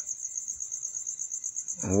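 Steady, high-pitched, rapidly pulsing trill of an insect, continuing without a break.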